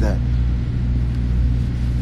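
A steady low rumble with a deep, even hum underneath, holding at one level through a pause in the talk.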